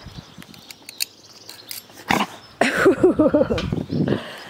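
Lion cub snarling and growling over its meat in a quick run of short, rough calls after a sharp opening hiss about two seconds in, guarding its food from the other cubs.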